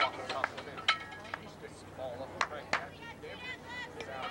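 A handful of sharp knocks or claps, the two clearest about two and a half seconds in, among the high-pitched calls and chatter of players on a softball field.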